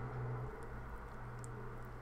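A steady low hum with a faint click about one and a half seconds in.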